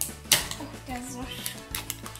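Plastic wrapping on a small toy egg crinkling and tearing in short sharp bursts as it is peeled open by hand, over quiet background music.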